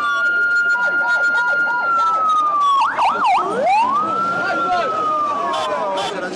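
Ambulance siren. A long held tone drifts slowly down in pitch, breaks into a quick warbling wail about three seconds in, then swoops up and sinks slowly again.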